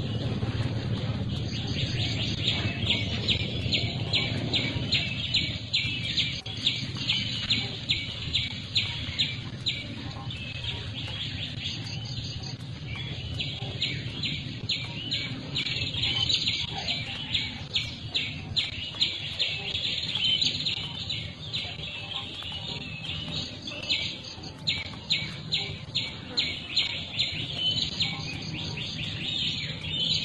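A bird calling in a long run of short, sharp chirps, about two a second, with a few brief pauses, over a low steady background rumble.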